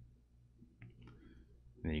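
A quiet pause with a single faint, short click about halfway through, followed by a little faint rustle; a man's voice resumes near the end.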